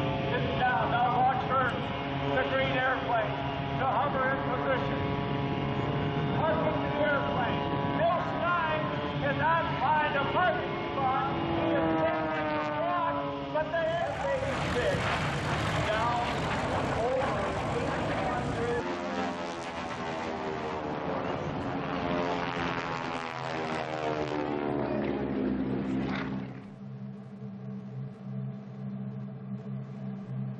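Air-show loudspeaker commentary over a steady hum, then the engine noise of propeller aerobatic planes passing overhead, growing and falling in pitch as they go by. The noise cuts off suddenly near the end, leaving a steady low hum.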